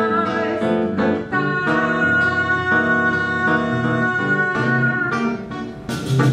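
Live acoustic music: a woman's voice holding long sung notes over acoustic guitar accompaniment. The music dips briefly just before the end.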